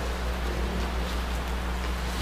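Room tone: a steady low electrical hum under an even hiss.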